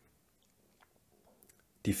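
Near silence, room tone with a few faint small clicks, before a man's voice starts right at the end.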